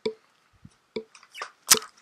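A few short, light clicks and taps from comic books being handled and swapped on a display stand. The loudest click comes near the end.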